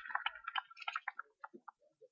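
Applause dying away into a few scattered hand claps, sharp and irregular, thinning out and stopping near the end. A faint steady tone sounds under the first half-second.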